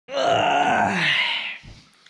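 A man who has just woken up lets out one long, drowsy groan that slides down in pitch over about a second and a half.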